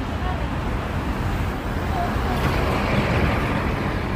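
Road traffic at a city junction: cars passing with a steady rumble. One vehicle gets louder as it goes by about two to three seconds in, and faint voices of people nearby sit under it.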